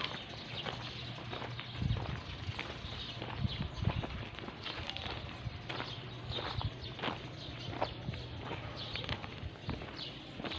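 Footsteps crunching on loose gravel at a walking pace, over a low steady hum.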